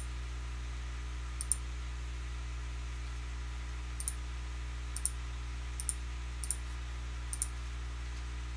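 Computer mouse clicking: about six sharp clicks at irregular intervals, each a quick double click-clack of the button's press and release, over a steady low hum.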